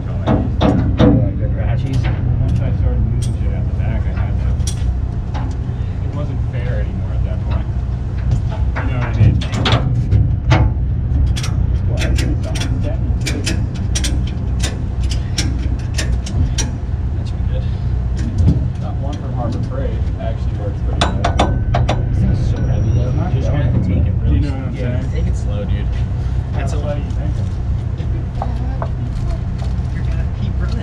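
Ratchet tie-down strap being cranked tight to secure a heavy machine, a run of sharp clicks at about two a second, over a steady low rumble.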